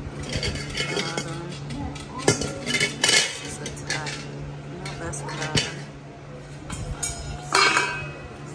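Metal parts of a charcoal kettle grill clinking and clattering as they are handled: the chrome wire cooking grate knocks against the enamelled steel bowl and other loose pieces in a series of irregular clinks.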